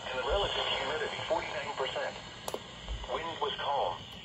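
Speech from a NOAA Weather Radio broadcast playing through a small radio speaker, the automated voice reading local weather observations. A brief click comes about two and a half seconds in.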